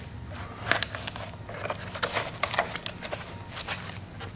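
Irregular light clicks and scrapes of hands working a motorcycle battery in its foam wrap out of its plastic tray.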